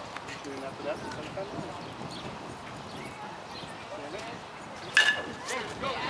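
A metal youth baseball bat striking a pitched ball about five seconds in: one sharp ping with a brief ringing tone, over faint chatter of spectators.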